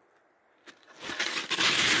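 Crunching and rustling of snowshoe steps in snow and brush. After a near-silent start it builds from about a second in and grows loud by the end.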